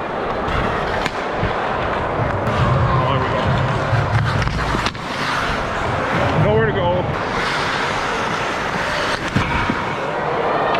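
Ice hockey game heard from a goalie's helmet-mounted camera mic: skate blades scraping the ice over a steady arena din, with a few sharp stick-or-puck clicks and a wavering shout about six and a half seconds in.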